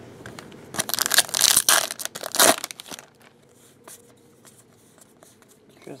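A foil trading-card pack wrapper being torn open and crinkled, loudest from about one second to two and a half seconds in, followed by faint handling of the cards.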